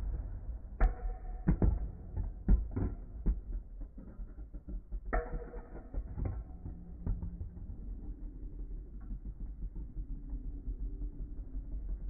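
Metal Fight Beyblade tops L-Drago 105F and Pegasis 85RF clash on a plastic stadium floor. There is a quick run of sharp clicks and knocks in the first few seconds and another burst of hits about five to six seconds in. Between and after the hits, a lower, steadier sound of the tops spinning.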